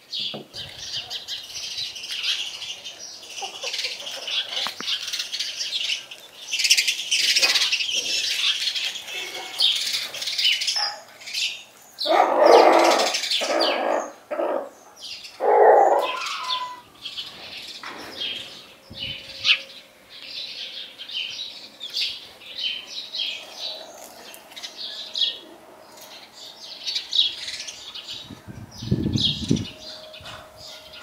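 Chickens and small birds calling in a farmyard: steady high chirping, with two louder calls about twelve and fifteen seconds in.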